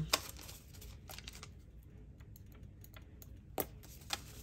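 Paper banknotes being handled: a stack of cash bills flicked and squared in the hands, giving a few faint scattered clicks and rustles, with a sharper click near the end.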